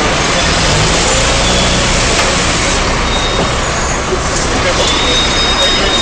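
Loud street commotion: jumbled overlapping voices with no clear words, traffic noise and the low, steady running of a large vehicle's engine for the first couple of seconds.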